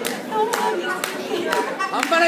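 Hand claps in a steady beat, about two a second, with voices over them, in a short break in the music.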